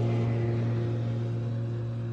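The band's last guitar chord held and ringing out, fading steadily.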